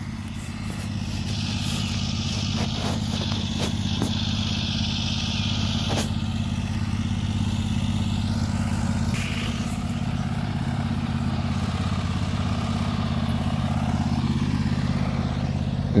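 An engine running steadily at a constant speed, a low even hum with no change in pitch, with a couple of faint clicks along the way.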